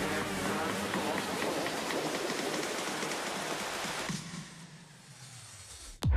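A noise-like whoosh in electronic background music, a steady hiss across all pitches that dies away about four seconds in.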